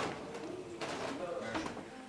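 A pigeon calling: a few short, low, wavering notes, with people's voices faintly behind.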